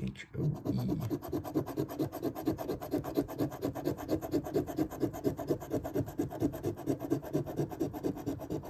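A coin scraping the latex coating off a paper scratch-off lottery ticket in fast, even back-and-forth strokes.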